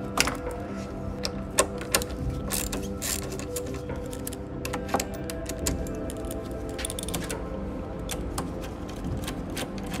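Quarter-inch-drive socket ratchet clicking in irregular runs as a 10 mm bolt is undone, over steady background music.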